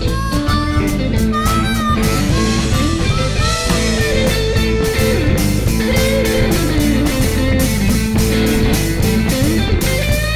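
Instrumental break of a slow blues played by a full band: an electric slide guitar plays a lead line whose notes glide and bend between pitches, over a steady drum beat, bass and rhythm guitars.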